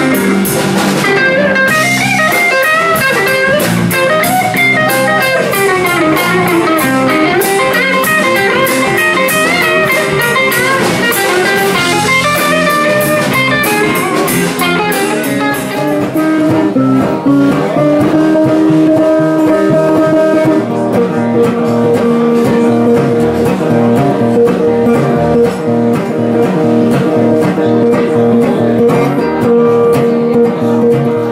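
Live blues band: an electric guitar plays a solo full of bent notes over drums and cymbals. About halfway through the drums fall away and a resonator guitar carries on with long held notes.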